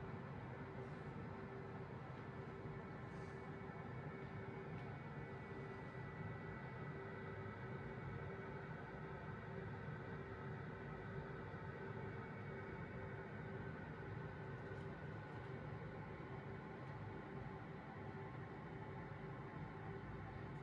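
Faint steady hum holding a few constant tones, with no sudden sounds: room tone.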